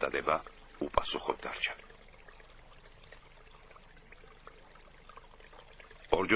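A narrator's voice for about the first two seconds, then a faint steady hiss close to silence.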